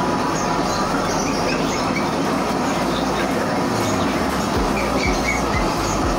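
Steady, dense din of a busy market, with faint high chirps scattered through it.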